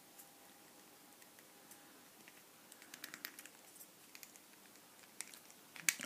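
Faint, scattered clicks and light rustles of hard plastic action-figure parts being handled as a smoke-effect piece is slid under the figure's armor, with a sharper click just before the end.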